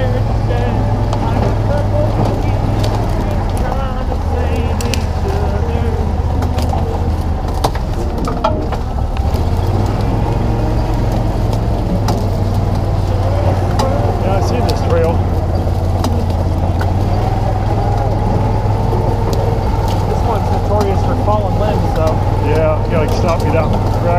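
Small utility vehicle's engine running with a steady low drone as it drives along a rough trail, with occasional knocks and rattles from the bumpy ride.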